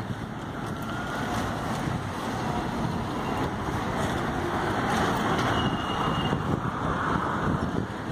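Street traffic noise: vehicles driving past on the road, growing louder toward the middle and later part, mixed with wind on the microphone.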